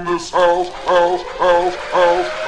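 Hard house dance music: a short pitched note, each one scooping up in pitch as it starts, repeats about twice a second, with no bass drum underneath.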